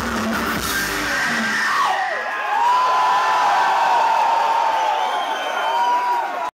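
Live heavy metal band, electric guitars and drums, playing the end of a song. About two seconds in the low end drops out, leaving a long held high note that slides up and down, with yells from the audience.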